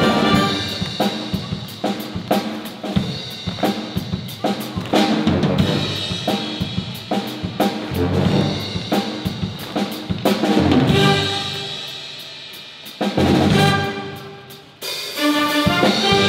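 Police concert band playing an upbeat piece, with brass and drum kit keeping a steady beat. Near the end the music thins out, then a loud brass section comes in.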